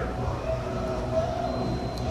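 A steady low hum with a few faint held tones above it.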